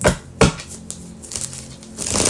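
A deck of tarot cards being shuffled by hand: two sharp card snaps about half a second apart near the start, then quieter light clicking and rustling of the cards.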